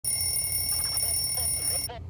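An alarm sounding with a steady high-pitched electronic tone, cut off suddenly near the end as it is switched off.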